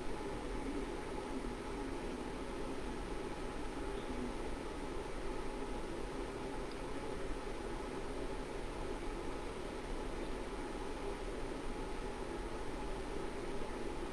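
Steady, faint hiss of background noise with no distinct sounds standing out of it.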